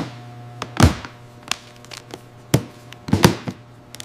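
Hollow thunks and taps of a clear plastic storage box lid being handled and pressed shut, the loudest about a second in and a cluster of knocks near the end, over a steady low hum.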